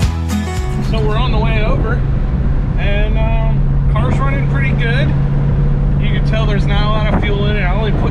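Music ends in the first second. Then comes the steady low drone of a Chevrolet Caprice being driven, heard from inside its cabin, with a man talking over it.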